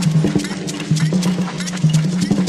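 Jazz ensemble passage led by dense hand percussion: rapid, irregular wood-block-like clicks and drum strokes over a low sustained tone that steps between two pitches.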